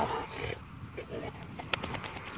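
A dog breathing close to the microphone just after a retrieve, with a few sharp clicks near the end.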